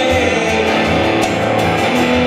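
An electric guitar and a strummed acoustic guitar playing a song live together.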